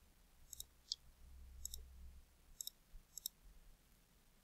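Faint computer mouse clicks, about five of them spaced roughly a second apart, as points are picked to draw line segments, over a low background hum.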